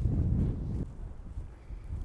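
Wind buffeting an outdoor microphone: a low rumble, strongest for about the first second, then easing off.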